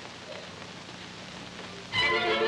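Soft-shoe dance steps brushing and shuffling on a stage floor: a faint, even scratching noise while the orchestra drops out, with the music coming back right at the end.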